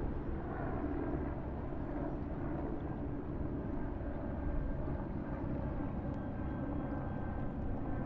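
Steady low rumbling noise, strongest in the bass, with a faint hiss above it.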